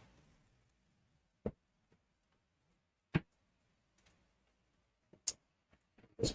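Near silence broken by three short, sharp clicks, spaced unevenly and the middle one loudest. They come from hands working at a road bike's drop handlebar as the bar tape is finished and the bar end plugged.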